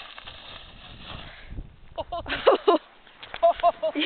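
A steady rushing noise on the microphone, then from about two seconds in loud, excited shouts from onlookers in several short bursts as a snowboarder launches off a jump.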